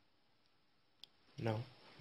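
Quiet room tone broken by a single short, sharp click about halfway through, followed by a man's voice saying "now".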